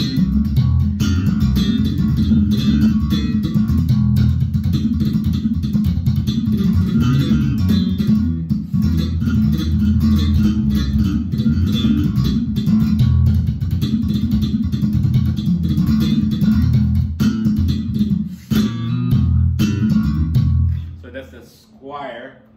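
Jazz-style electric bass guitar played fingerstyle through an amplifier: a continuous bass line of plucked notes that stops shortly before the end.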